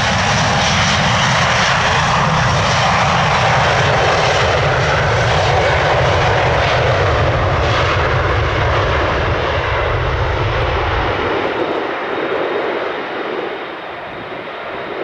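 Airbus A330-800's Rolls-Royce Trent 7000 turbofans at takeoff thrust during the takeoff roll: a loud, steady jet roar with a deep rumble underneath. The rumble drops away about eleven seconds in, and the roar eases slightly near the end.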